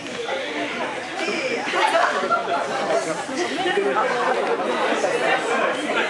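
Chatter of many people talking over one another.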